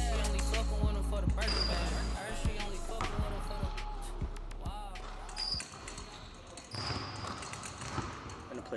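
A basketball bouncing on a hardwood gym floor, about one bounce every half second, with a few brief sneaker squeaks. Bass-heavy music cuts out about two seconds in.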